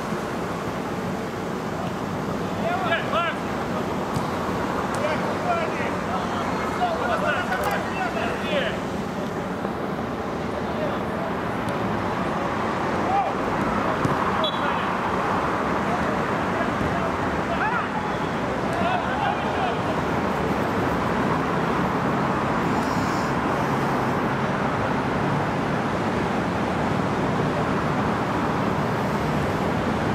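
Outdoor mini-football match sound: players' shouts come through a steady background noise haze, mostly in the first third and again about two-thirds of the way in. A couple of sharp knocks fall near the middle, and the background grows slightly louder after about ten seconds.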